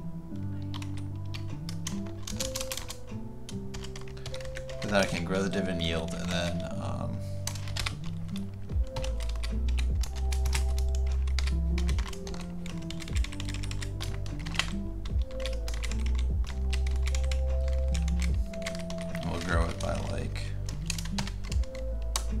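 Computer keyboard typing, with quick runs of key clicks, over background music with a low bass line.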